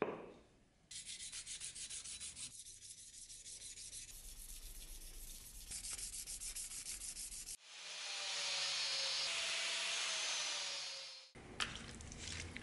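A hand-held sharpening stone honing the oiled steel edge of an axe, in quick rhythmic scraping strokes. This is followed by a steady hiss lasting about four seconds.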